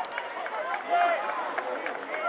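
Several voices shouting and calling out across an open playing field, overlapping one another.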